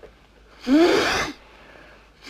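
A person's single short, breathy vocal burst, like a huff or gasp, lasting under a second, about a third of the way in.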